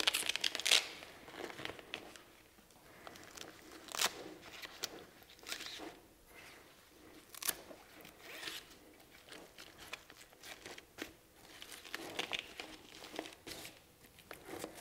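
Handling noise of a fabric softbox being stretched over an LED panel's frame: intermittent rustling and crinkling of the fabric, with scattered sharp clicks and knocks from the frame rods.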